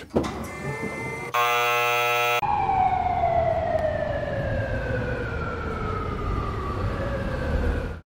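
A flat, buzzy tone lasts about a second, then cuts to a siren tone that falls slowly and steadily in pitch for over five seconds, like a siren winding down.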